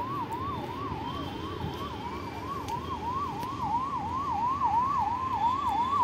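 A siren wailing in a fast, regular rising-and-falling yelp, about three cycles a second, growing louder in the second half.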